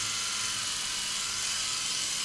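Braun Face 810 battery-powered facial epilator running with a steady high whir, its tweezer head worked against the eyebrow.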